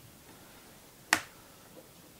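A single sharp click about a second in.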